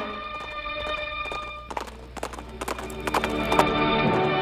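Background music with a horse's galloping hoofbeats. The music drops back a little under two seconds in while the hoofbeats come to the fore, and it swells again near the end.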